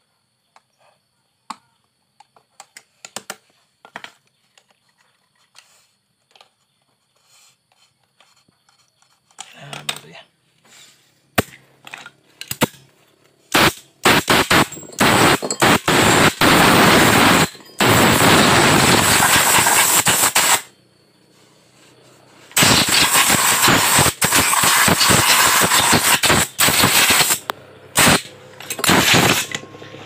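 Small metal clicks as springs are hooked onto the shoes of a scooter's CVT centrifugal clutch with pliers. Then, from about ten seconds in, loud bursts of rapid mechanical rattling, each lasting a few seconds, with short gaps between.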